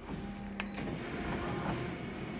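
Konica Minolta colour multifunction copier starting a copy job: steady mechanical whirring as it runs up and stabilizes the image before printing, with a single click about two-thirds of a second in.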